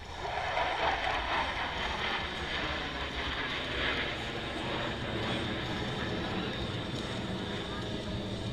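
Jet engine noise from a formation of military jets flying overhead, starting abruptly, loudest in the first second and then holding steady.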